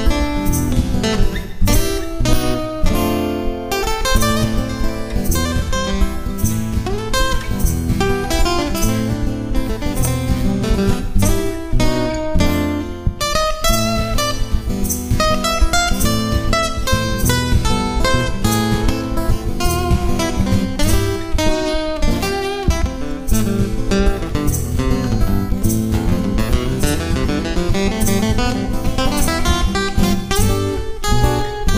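Sigma DME dreadnought acoustic-electric guitar strummed in a continuous chord pattern, heard through its built-in piezo pickup and three-band preamp.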